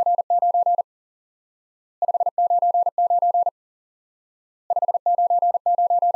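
Morse code '599' sent on a single steady beep at 40 words per minute, in three quick groups with short gaps between them: each group is five rapid dits followed by two 'dah-dah-dah-dah-dit'. 599 is the standard perfect signal report in amateur radio contacts.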